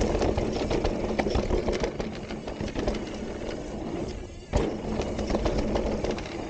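An e-mountain bike riding fast down dirt singletrack: wind buffeting the camera microphone and tyres rolling over dirt and leaves, with frequent clicks and rattles from the bike over bumps. The noise drops briefly after about four seconds, then comes back suddenly.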